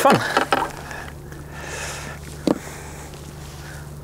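A boat's motor running with a steady low hum, with a brief rushing noise about a second in and a single knock about two and a half seconds in.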